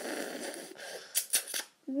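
Mouth-made battle sound effects: a long hissing rush, then three quick sharp bursts a little over a second in.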